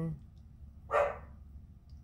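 A single short dog bark about a second in.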